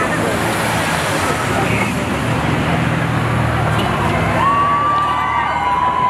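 Crowd of people chattering beside a street as cars drive past, an engine running close by. About four and a half seconds in, a long steady car horn begins and holds.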